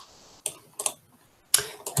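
A few sharp clicks of a computer mouse, the loudest about one and a half seconds in.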